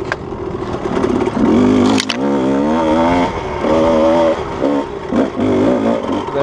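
Kawasaki KDX220's two-stroke single-cylinder engine revving up and down as the dirt bike is ridden. A single sharp clack comes about two seconds in.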